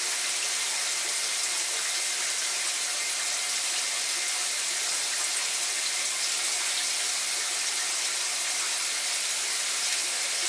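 Steady, even rush of water from a running tap, unchanging throughout.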